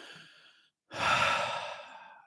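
A man breathing close to the microphone: a faint breath at the start, then a louder, longer breath from about a second in that fades away.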